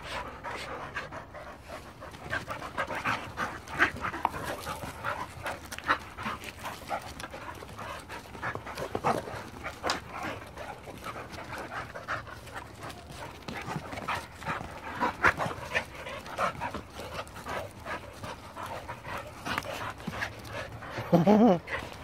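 Dogs panting hard while tugging and scuffling over a flirt pole lure, with frequent short knocks and scuffs.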